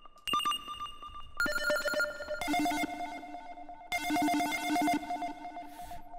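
Serum software synth effect patch sounding: a distorted, trilling, phone-ring-like tone whose pitch is switched rapidly by a square-wave LFO on the master tuning, with delay and reverb. It plays as a series of held notes that change pitch about every one to one and a half seconds, the later ones stacked into denser chords.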